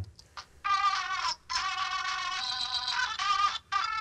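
A fuzz-distorted lead part from a multitrack recording session, soloed: a few long, wavering high notes with short breaks between them.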